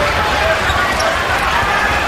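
Steady arena crowd noise at an NBA game, with a basketball being dribbled on the hardwood court.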